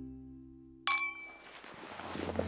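A single sharp clang with a short ringing tail about a second in, after the last notes of guitar music have died away.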